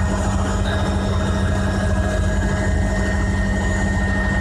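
Light aircraft's engine and rotor or propeller droning steadily, heard from inside the cockpit: one unbroken low hum with a fast throb beneath it.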